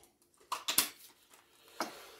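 A few short knocks and clatters of kitchen items being handled, a couple about half a second in and one more near the end.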